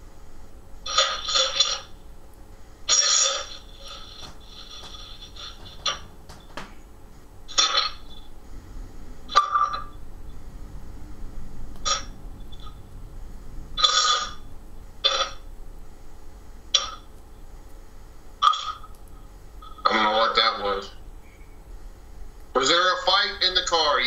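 Ghost box (spirit box) sweeping through radio stations: short, choppy bursts of radio noise and clipped voice fragments every second or two over a steady hum. A longer stretch of voice comes near the end.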